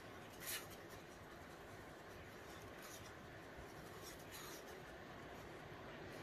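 Faint scraping of a wooden stir stick against the inside of a paper cup as colour is mixed into resin, with a brief louder scrape about half a second in and another fainter one a little after four seconds.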